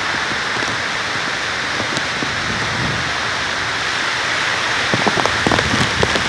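Heavy typhoon rain pouring steadily, driven by strong wind, in a dense even hiss. A few short sharper sounds come near the end.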